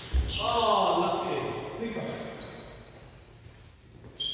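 A thud on the sports-hall floor as a badminton player lunges, a voice calling out a falling 'ohh', then trainers squeaking on the court floor in drawn-out high squeals.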